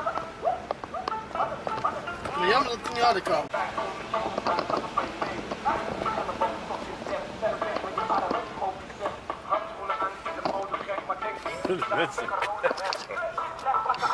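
People's voices talking inside a car's cabin while it drives.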